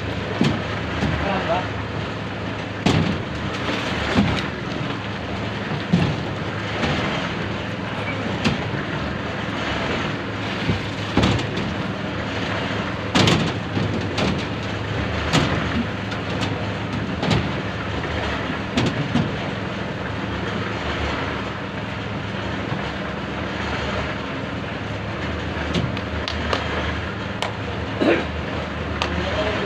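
A motor hums steadily under frequent sharp clanks and knocks of concrete buckets being handed along and set down on steel rebar during a hand-carried slab pour.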